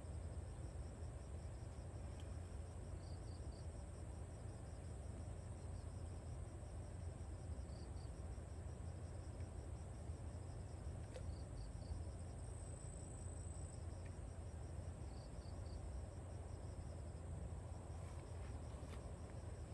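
Insects chirping in the grass: a fast, steady pulsing trill, with short groups of three chirps every few seconds, over a low steady rumble.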